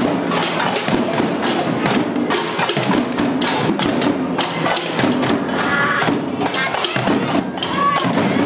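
Drums and hand percussion struck with sticks by a group of children, a dense run of irregular hits, with children's voices calling out over it.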